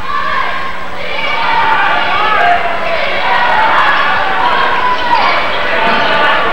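Gymnasium crowd noise of overlapping shouting and cheering voices during a basketball game, with a basketball bouncing on the hardwood court. The sound comes through an old VHS camcorder microphone.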